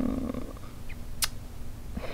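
A quiet pause in a woman's talk: soft breath noise at first, then a single short click about a second in, over a faint low room hum.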